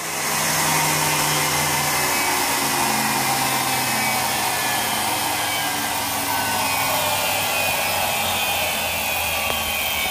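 Electric-motor-driven ignition test rig spinning a Kawasaki KH400 pickup back plate at high speed: a steady motor whine and hum, several of its tones shifting slightly lower after about two seconds.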